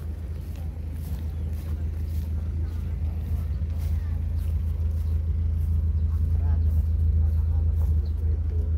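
Wind buffeting a phone's microphone outdoors: a steady low rumble that grows gradually louder.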